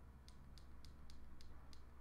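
Faint, quick clicks, six in a row at about three a second, from the push buttons of a Ledger Nano S hardware wallet being pressed to step through and enter a PIN code.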